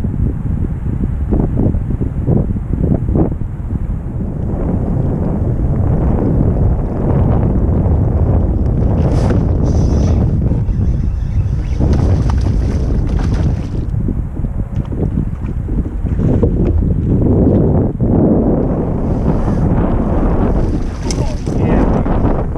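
Steady, loud wind buffeting the camera microphone, with brief splashing bursts around the middle and near the end from a hooked smallmouth bass thrashing at the surface.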